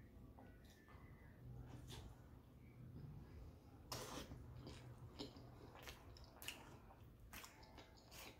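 Faint chewing of a mouthful of loaded chili cheese hot dog, with a few soft scattered mouth clicks, barely above silence.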